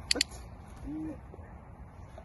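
A dog-training clicker clicks twice in quick succession right at the start, the press and release marking the puppy's sit for a food reward. About a second in comes a short, low hum that rises and falls.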